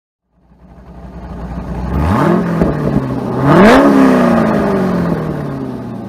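A car engine accelerating hard. It fades in, climbs in pitch about two seconds in, drops back, then climbs again to its loudest about three and a half seconds in before its pitch and loudness fall slowly away.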